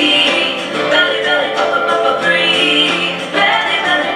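A children's song about calming your inner monster by belly breathing: a sung melody over instrumental backing.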